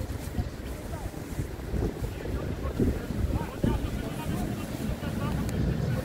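Wind buffeting a phone microphone, an uneven low rumble, with faint distant voices of players calling on the pitch.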